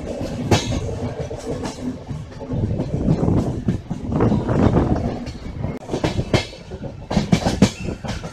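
Passenger train coaches running on the track, heard from an open doorway: a steady rumble with sharp wheel clacks over the rail joints coming at uneven intervals, several close together near the end.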